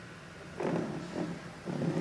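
Steady low hiss, then a woman's voice starts speaking softly about half a second in, through a microphone.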